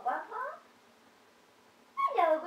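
A baby's brief high-pitched coo, sliding up and down in pitch, in the first half-second.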